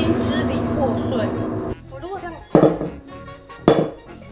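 A short burst of music, then two sharp knocks of hard objects on a gold-painted ceramic piggy bank, about a second apart, the second the loudest. The piggy bank does not break.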